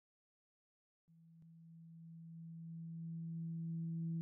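Silence for about a second, then a low, steady synthesizer note fades in and swells gradually: the opening of the intro music.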